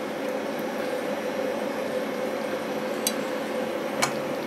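Steady hum and hiss of a running home distillation rig, with one light click about three seconds in.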